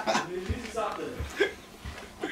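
Quiet, broken-up talk with a short chuckle-like voice sound, fading after a louder voice at the very start.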